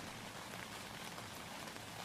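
Faint, steady background hiss with no distinct events, the noise floor under the dialogue.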